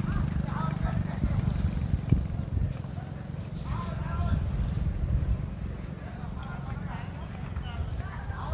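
Wind buffeting a phone microphone outdoors: a steady, fluctuating low rumble, with faint distant voices above it.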